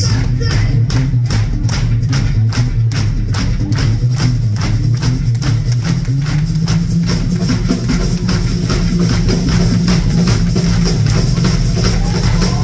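Live folk-shanty band playing an upbeat instrumental passage: a drum kit keeps a fast, even beat under electric guitar and a steady bass line.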